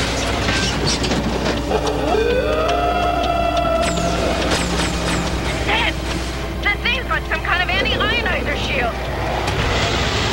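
Cartoon soundtrack of action music mixed with sound effects. A tone rises into a held note about two seconds in, and a quick run of warbling up-and-down chirps follows about seven seconds in.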